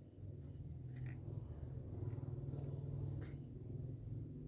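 Two soft paper rustles, about a second in and again near the end, as paper cones are handled and pressed onto paper strips. Under them run a steady low hum and a faint high whine.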